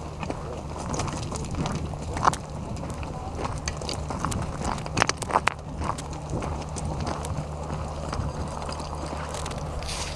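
Footsteps crunching on loose gravel and stones, irregular clicks and scrapes as several people walk, over a steady low hum.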